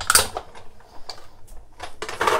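Hand-cranked die-cutting machine running a cutting-plate sandwich through to cut a scallop edge in cardstock: a sharp click near the start, then a few softer mechanical ticks.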